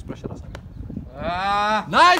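A man's long drawn-out shout, held on one slightly falling pitch, starting about a second in and lasting nearly a second.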